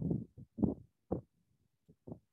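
A few brief, quiet murmured voice sounds, separate syllables with pauses between them, over a video-call audio line.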